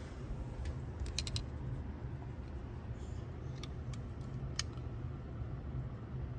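Low steady hum with a few faint, light clicks: a quick cluster about a second in and two single ticks later.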